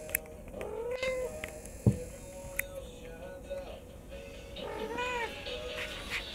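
A Burmese cat mewing: two drawn-out high-pitched mews, one about a second in and one near the end, with short fainter peeps between.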